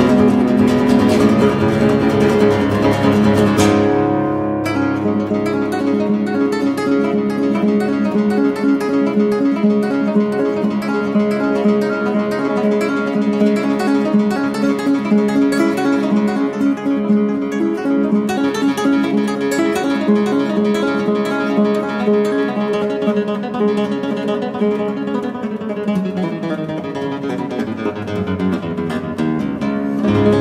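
Solo nylon-string classical guitar playing fast, continuous arpeggio figures over low strings that keep ringing.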